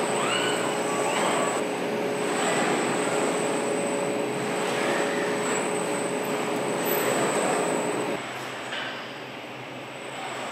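Car-factory machinery noise: a steady mechanical hum with a held tone, and a few short squeals about a second in. It drops noticeably quieter about eight seconds in.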